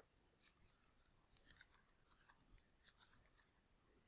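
Near silence with very faint computer keyboard keystrokes: a quick run of light clicks, typing a web address, from about a second in to past three seconds.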